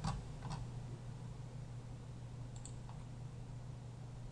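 A few faint computer mouse clicks, spaced irregularly, over a steady low electrical hum.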